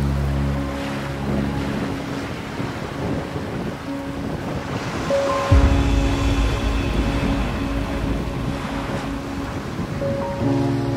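Ocean surf washing in and hissing over the sand, under slow background music of long held chords. About five and a half seconds in, a deep bass note and a new chord come in.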